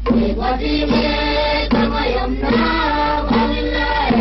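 A song: a voice singing a melody over a steady drum beat, a little under one stroke a second. The singing comes in right at the start, after a drum-only lead-in.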